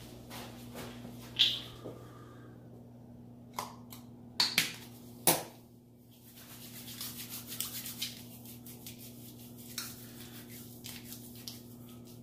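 A few sharp clicks and knocks, then hands rubbing together in gritty pumice hand soap, a soft wet rustle with fast little ticks, over a steady low hum.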